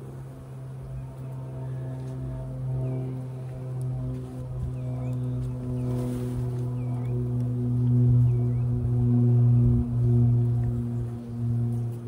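Honeybees humming over an open, crowded hive as a frame of bees is lifted out: a steady low drone that wavers and swells, loudest about eight to ten seconds in.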